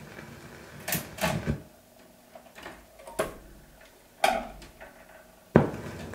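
Turntable being cued for the next side of a 78 rpm shellac record: a few handling clicks and knocks in the first half, then the stylus set down on the record with a sharp thump about five and a half seconds in, followed by steady surface hiss from the groove.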